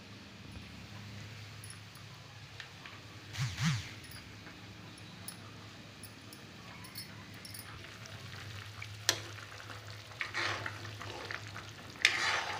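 Curry gravy simmering faintly in a steel kadhai, with a brief louder noise about three and a half seconds in. Near the end a spoon clicks and scrapes against the pan as the gravy is stirred.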